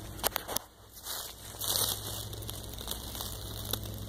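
Rustling and crackling of leaf litter and plant foliage being handled, with a few sharp clicks about half a second in and scattered short rustles after.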